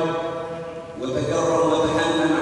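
A man chanting Arabic in long, drawn-out held notes, a melodic recitation of the kind that opens an Islamic sermon; one phrase fades and a new one begins about halfway through.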